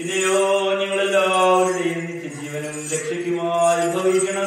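Liturgical chant of the Syriac Orthodox Qurbono: a single male voice intoning a long phrase in held notes, the pitch dipping in the middle and rising again near the end.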